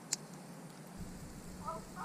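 Quiet night campsite background with one sharp click near the start. Near the end a soft "oh", and just at the close a distant person's drawn-out wolf-like howl begins, a long steady call.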